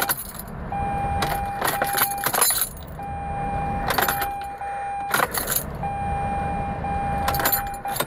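Ignition key switched on and off three times, keys jangling and clicking in the lock. Each time the Mazda RX-8's electric fuel pump runs with a steady whine for about two seconds, priming and pressurizing the fuel line.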